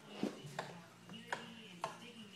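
Four faint, sharp clicks and taps about half a second apart: a phone being handled while its camera settings are changed.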